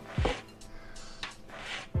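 A whole nutmeg scraped on a small metal hand grater in a few short rasping strokes, over faint background music.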